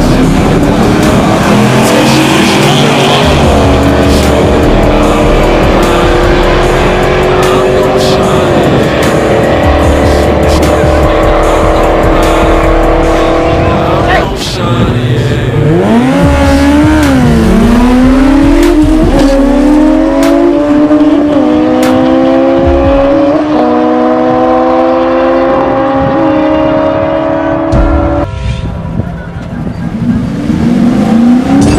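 Drag-racing cars and motorcycles launching and accelerating down the strip, their engine notes climbing in pitch with drops at the gear changes. One run fades about halfway through and the next begins.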